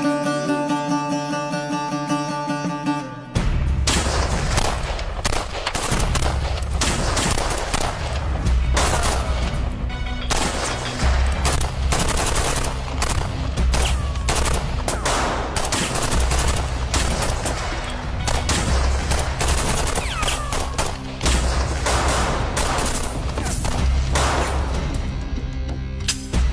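About three seconds of dramatic music, then a sustained firefight of rapid, dense gunfire from rifles and pistols, including automatic bursts, with the music carrying on underneath.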